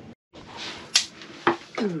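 A single sharp crack about a second in, from a metal cracking tool biting on the shell of a cooked coconut crab claw, over quiet room tone.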